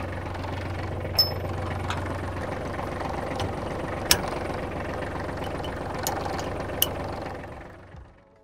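Kubota L3300 tractor's diesel engine idling steadily, with a few sharp metallic clicks over it. The sound fades away near the end.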